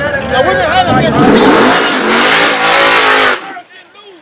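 Men talking loudly over a drag-race car's engine running hard close by; the engine noise builds and then cuts off abruptly a little past three seconds in.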